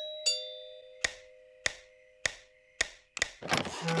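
Two-note doorbell chime, a high note then a lower one, both ringing on and slowly fading. From about a second in come slow, evenly spaced footsteps, about two a second, then a quick clatter of the door opening, and music starts near the end.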